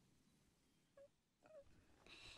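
Near silence, broken by two faint, short, pitched voice sounds: one about a second in and a slightly longer one near a second and a half.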